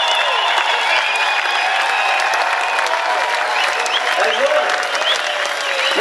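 Audience applauding, dense clapping with shouts and high whistling tones over it.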